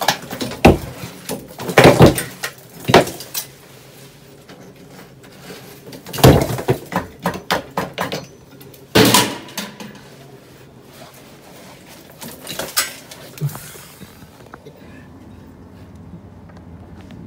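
Sharp knocks and metallic clatters as an old boiler flue pipe is worked loose and pulled out of the wall, coming in irregular bunches, heaviest about two seconds in and again from about six to nine seconds in, and fading out toward the end.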